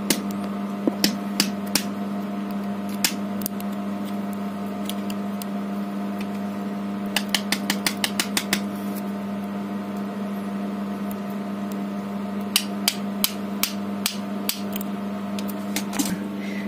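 Small sharp clicks and taps of plastic and metal as the carbon-brush end cap of a 775 DC motor is fitted and pressed onto the motor can. A quick run of about eight clicks comes about seven seconds in, and more come near the end. A steady hum runs underneath.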